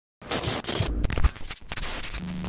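A scratchy, crackling glitch-noise effect cuts in suddenly a fraction of a second in, full of clicks, with a brief dropout about one and a half seconds in.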